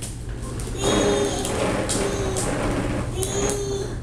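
Plastic wheels of toddler ride-on toy cars rumbling across a concrete floor, with a few short steady tones over the rolling noise.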